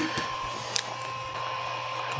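Chugger centrifugal brewing pump running with a steady hum. A light click comes a little under a second in.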